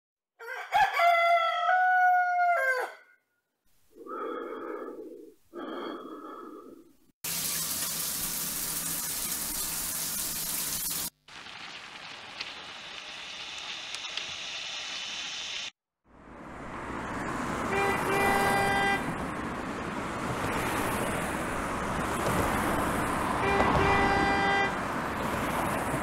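A rooster crowing once, followed by two shorter calls. Then a stretch of loud steady hiss, a quieter noisy stretch, and from about the middle a rising traffic-like rumble with two horn-like honks about five seconds apart.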